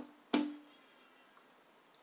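A deck of tarot cards knocked down onto a tabletop: one sharp knock with a short ringing tail.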